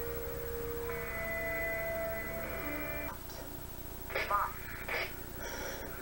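A TV episode's soundtrack played over speakers: a long held note of background score, moving to a higher held note about a second in and stopping at about three seconds, followed by a few brief snatches of voice near the end.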